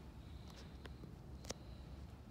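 Quiet workshop room tone: a faint low hum with a few faint clicks, the sharpest about one and a half seconds in.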